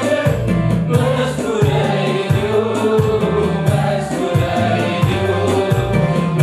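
A gospel worship song sung by a small choir with a male lead, in Tigrinya, over an accompaniment with a bass line and a steady beat.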